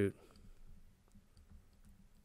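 Faint, scattered clicks and light scratching of a stylus on a drawing tablet as handwriting is drawn.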